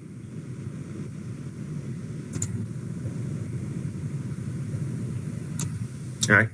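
A steady low rumble of background noise that grows slightly louder, with two short clicks, one about two and a half seconds in and one near the end.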